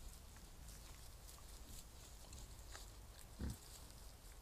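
Wild boar giving one short, low grunt about three and a half seconds in, with faint ticks and rustles in the leaf litter around it.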